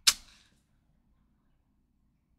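One brief sharp click right at the start, then near silence: room tone.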